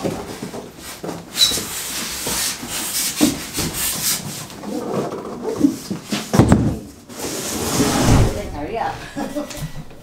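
A large cardboard TV carton being lifted off its polystyrene foam packing: cardboard and foam rubbing and scraping, with two heavier bumps in the second half. Laughter and low talk over it.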